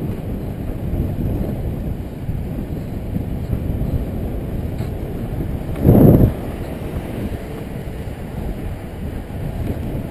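Wind rushing over an action camera's microphone on a moving road bike, a steady low rumble with one short, louder gust about six seconds in.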